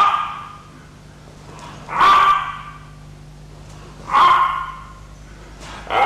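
A man's sharp kiai shouts, 'ay', each marking a strike of a wooden sword in the aikiken suburi: three shouts about two seconds apart, a fourth starting at the very end, over a low steady hum.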